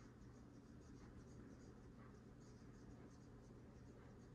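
Near silence: room tone with a faint steady low hum and faint, rapid high ticking.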